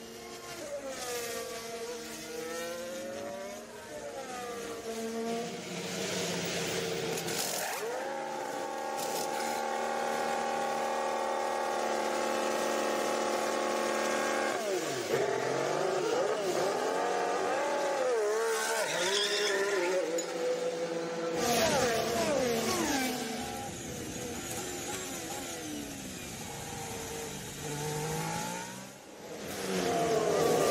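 Formula 1 cars' 1.6-litre turbocharged V6 hybrid engines heard across several cut-together race shots, their notes rising and falling with throttle and gear changes, with a stretch of steady engine note in the middle.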